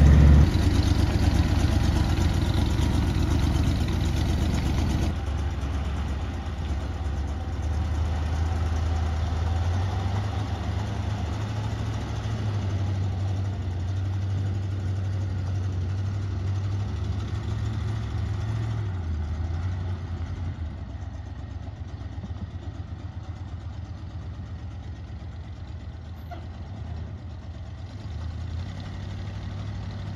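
Carbureted gas engine of an old Class C motorhome running as it drives off, a low steady rumble that grows fainter as it goes. The engine has just been coaxed into running after a long, hard start on a cold morning.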